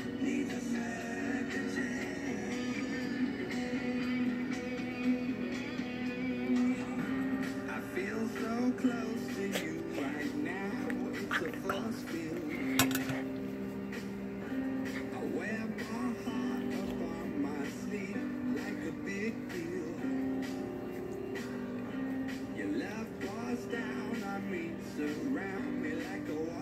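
A pop song with vocals playing from a radio in the room, with one sharp click about halfway through.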